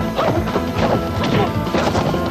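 Kung fu fight sound effects: several sharp punch-and-kick whacks in quick succession over background fight music.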